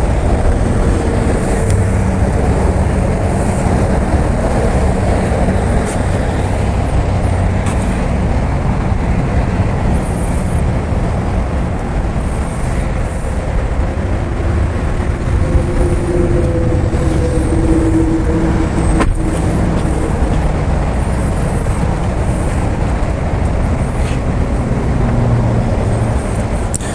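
The Corvette Z06's LS7 V8 idling steadily, a constant low rumble.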